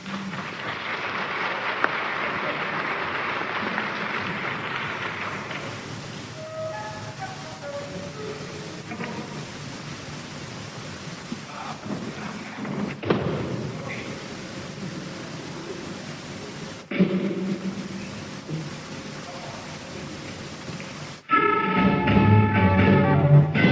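Concert audience applauding and cheering, which fades after about five seconds into crowd noise with a few scattered instrument notes. The rock band starts playing loudly about a second before the end, and the lo-fi live recording has brief sudden dropouts.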